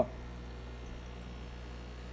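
Steady low hum with faint hiss in the background, with no distinct events.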